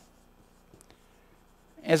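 Faint scratching of a felt-tip marker writing on a whiteboard, with a man's voice starting a word near the end.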